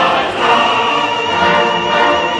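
Operatic chorus and orchestra performing live, with a voice holding a long note with vibrato from about half a second in.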